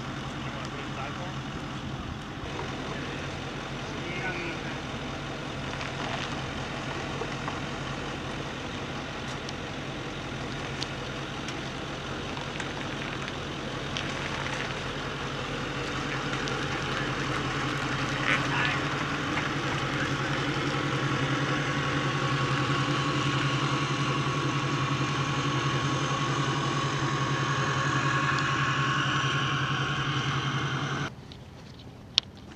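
A tow truck's engine running steadily, a low hum that grows louder in the second half, with a steady higher whine joining about twenty seconds in. A few sharp metallic clicks and clanks sound over it.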